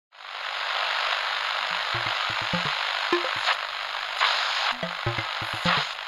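Electronic intro sting: a steady hiss like radio static fades in at once, and from about two seconds in short low synth blips sound over it, coming faster toward the end.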